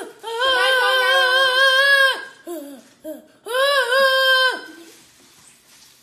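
A young boy's voice making long, wavering, high 'ahh' cries: two drawn-out ones with a few short cries between them. He is imitating the sounds he says he heard through his parents' door.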